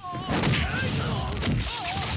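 Film fight sound effects: a rapid series of heavy punch and crash impacts, with voices yelling between the blows.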